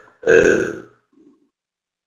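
A single short, rough vocal noise from a man, under a second long, like a grunt or a half-voiced throat sound rather than a word.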